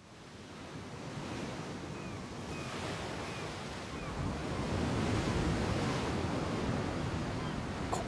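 Sea surf and wind, fading in and growing steadily louder, with a few faint short chirps in the first half.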